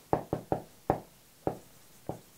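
Dry-erase marker on a whiteboard, its tip knocking against the board at the start of each stroke while writing figures: five short, sharp taps at uneven intervals.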